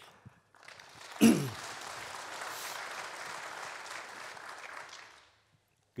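Audience applause in a hall, steady for about four seconds and then dying away, with a brief loud thump about a second in.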